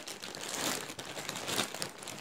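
Clear plastic bag crinkling and rustling irregularly as hands work it open and pull it off a doll.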